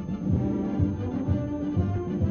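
Orchestral newsreel background music led by brass, with a low bass pulse about three times a second.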